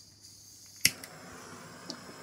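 Handheld butane torch: gas hissing, then one sharp ignition click a little under a second in, followed by the steady hiss of the lit flame. A smaller click comes near the end.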